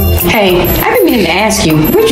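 A voice with strongly sweeping, swooping pitch over a commercial's background music.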